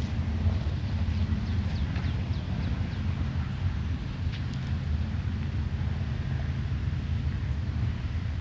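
A steady low rumble of wind buffeting the microphone. Over it, a bird gives a quick run of short, high chirps in the first few seconds and a couple more about four seconds in.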